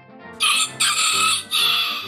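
A rooster crows once over background music. The crow is loud, starts about half a second in, lasts about a second and a half, and comes in three parts.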